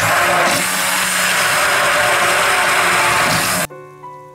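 Hand-held immersion blender blending eggs and milk in a bowl: a loud, steady whir that starts abruptly and cuts off sharply about half a second before the end.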